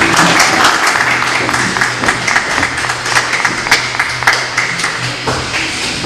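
A small crowd clapping and cheering, with music playing underneath.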